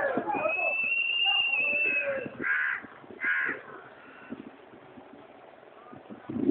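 Two short, harsh caw-like bird calls about a second apart, after a long steady high-pitched tone lasting nearly two seconds, with voices at the very start.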